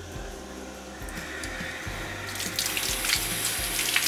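Water running from a garden hose fed by an outdoor wall tap that has just been opened, the stream splashing onto a tiled floor. The rush starts about a second in and grows louder from about two seconds in.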